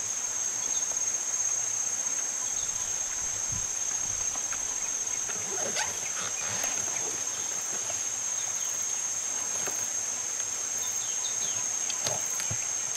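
A steady, high-pitched insect chorus drones throughout, with faint rustling and crunching from a silverback eastern lowland gorilla tearing and chewing wild banana plant pith, mostly around the middle.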